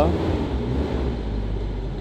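Steady low hum of a 1996 Toyota Kijang Grand Extra's engine idling, heard from inside the cabin, with the air conditioning switched on and blowing cold.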